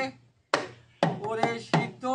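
Small hand-held Baul folk instrument played alone: one sharp stroke about half a second in, then three quick strokes about a second in that ring with a short pitched tone and die away.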